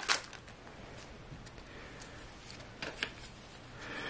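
A stack of hockey trading cards handled by hand: a few short flicks and taps, the sharpest right at the start and a little before three seconds in, with only faint rustling between.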